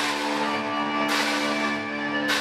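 Live rock band: crash cymbals struck on a drum kit, about a second apart, each washing out slowly over a held, ringing chord.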